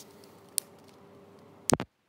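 Quiet room tone with a faint steady hum. There is a single small click about half a second in, then two or three sharp knocks near the end as a hand takes hold of the 360 camera, and the sound cuts off abruptly.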